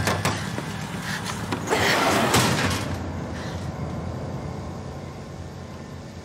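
Movie soundtrack of a truck door being yanked at and opened. A few sharp knocks come at the start and a loud rush of noise about two seconds in, over a low steady rumble that slowly fades.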